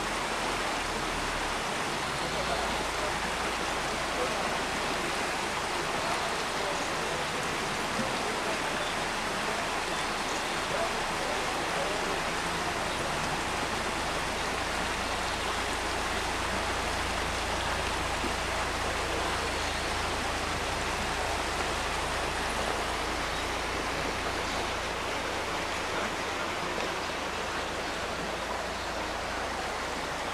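Shallow river running over rocks and gravel: a steady rushing noise with no breaks.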